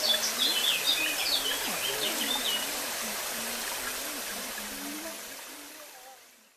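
Shallow rocky river flowing, a steady rush of water, with a small bird singing quick chirps over the first half. The sound fades out near the end.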